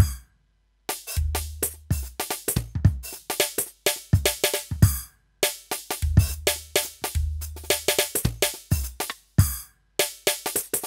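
Roland TD-17KVX electronic drum kit played with sticks: a busy groove with fills of sampled kick, snare, tom and cymbal sounds from its sound module. The playing stops dead for short breaks about a second in, around five seconds and just after nine seconds.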